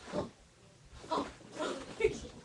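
A dachshund making three or four short barking sounds in play, each one brief and separate.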